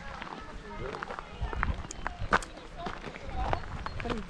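Indistinct voices with footsteps and scattered short clicks.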